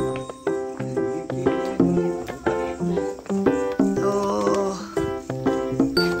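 Upbeat background music of short plucked and keyboard-like notes in a bouncy rhythm, with a brief warbling sound about four seconds in.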